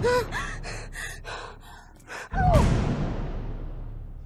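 A person gasping in panic: a short cry, a run of quick, ragged gasping breaths, then a sharp loud gasp over a sudden hit that fades away slowly.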